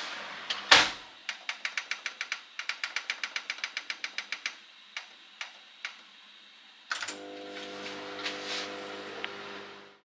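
Built-in microwave oven: the door shuts with a thud, then a quick run of clicks at the control panel, about six a second for three seconds, and a few single clicks as the cooking time is set. About seven seconds in the oven starts and hums steadily.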